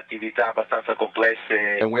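Speech only: a voice talking continuously over a narrow-band space-to-ground radio link.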